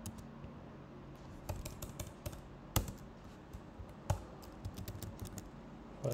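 Computer keyboard typing: irregular keystrokes, with two louder key presses about three and four seconds in.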